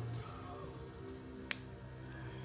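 Background music playing, and about one and a half seconds in a single sharp snip of small scissors cutting the tail of a cotton vape wick.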